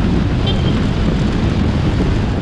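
Steady, loud wind rush buffeting the microphone of a camera on a moving motorbike, over a low road and engine rumble.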